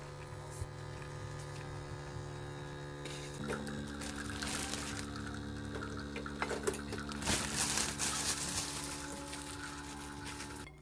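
Capsule coffee machine brewing: its pump hums steadily as coffee streams into a stainless steel milk pitcher, with a few clicks in the second half.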